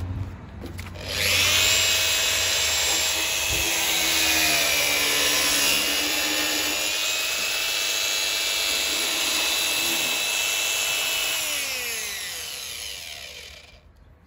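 A handheld electric power tool starts up about a second in and runs with a steady high-pitched whine for about ten seconds. It is then switched off and spins down, its pitch falling over the last two seconds.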